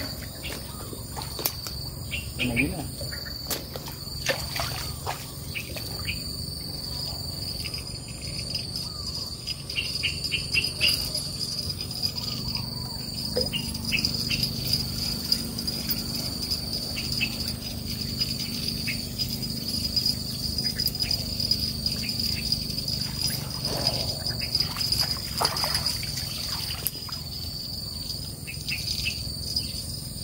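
Insects chirring in a steady high-pitched drone, with scattered clicks and rustles over it.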